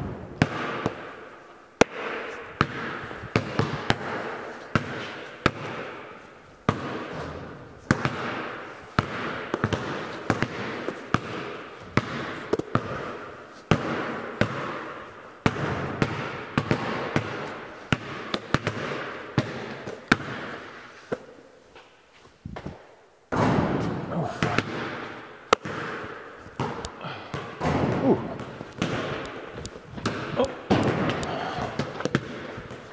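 Basketballs bouncing on a concrete floor and striking the rim and backboard, each hit ringing out with a long echo in a large steel-walled barn. The thumps come irregularly, several a second at times, with a short lull about three quarters of the way through.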